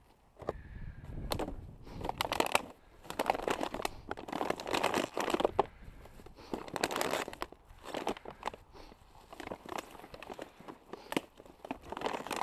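Plastic rubbish bag crinkling and rustling in irregular bursts as gloved hands gather and twist its neck closed.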